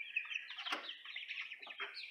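A brood of four- to six-week-old chicks peeping and cheeping, many short high calls overlapping without a break.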